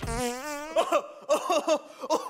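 A comic fart sound effect: a buzzy, wavering tone lasting under a second, followed by a run of short warbling sounds.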